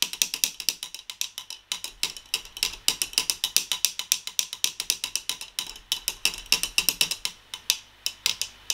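Teaspoon stirring coffee in a paper cup, a fast run of rhythmic clicks, several a second, as the spoon knocks against the cup. Coconut oil is being stirred into warm black coffee to melt it.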